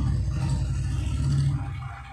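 A low, steady rumbling hum that fades away near the end.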